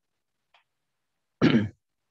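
A person clearing their throat once, a short rough burst about one and a half seconds in after a silent gap.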